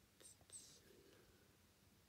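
Near silence, with a faint whisper and a few soft mouth or finger clicks about half a second in.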